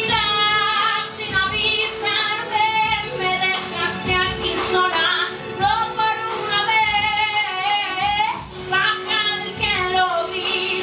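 A woman singing a soul/R&B vocal line live into a microphone, with wavering, ornamented runs that glide up and down between short breaths.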